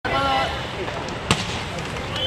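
Live poolside sound of a water polo game: voices calling out near the start over a noisy background, and one sharp knock a little over a second in.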